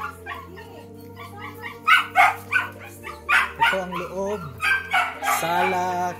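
Small dog barking repeatedly, a quick run of sharp barks starting about two seconds in.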